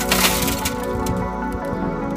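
Tempered car side-window glass shattering and crackling as it breaks, the crash dying away within about half a second, over steady background music.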